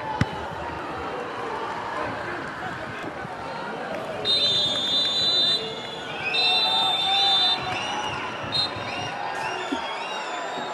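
Referee's pea whistle blown in two long blasts and one short one, the full-time whistle, over stadium crowd noise and players' shouts. There is a sharp knock near the start, as of a ball being kicked.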